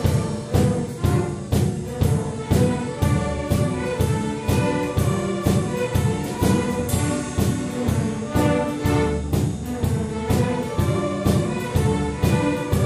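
A school string orchestra of violins, cellos and double bass playing, with a drum set keeping a steady beat of about two strokes a second.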